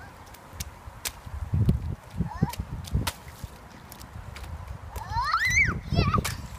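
Children's rubber rain boots stamping and splashing in a shallow puddle on concrete, in irregular splashes. A small child gives a high-pitched squeal about five seconds in.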